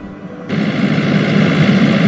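Car driving: steady engine and road noise that starts about half a second in.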